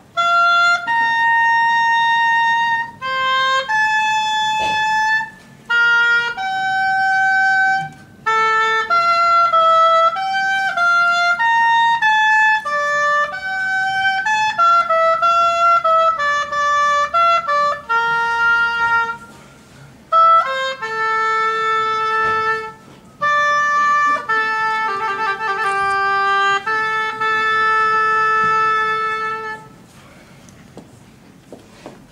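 An unaccompanied oboe plays a slow melody in phrases with short breathing gaps. The phrases hold long notes, with a quicker run of notes in the middle, and the last held note stops at the end.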